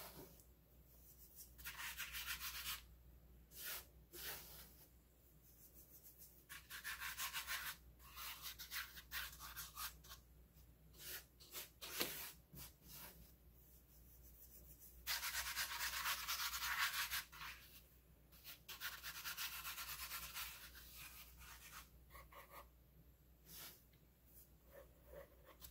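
A hand rubbing and sweeping over a tabletop in faint, irregular strokes of a second or two, gathering up spilled baking soda.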